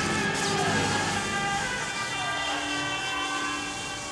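A man's drawn-out scream, falling in pitch and fading, over sustained orchestral chords, as he drops away down a deep shaft.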